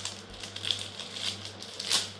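Clear plastic packaging of a phone case crinkling in a few short bursts as it is being opened, the loudest near the end.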